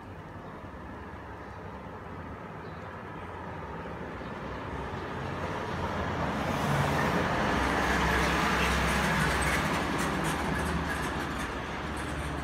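A large road vehicle passing close by on the street: traffic noise with a low rumble swells over several seconds, is loudest about seven to ten seconds in, then eases off.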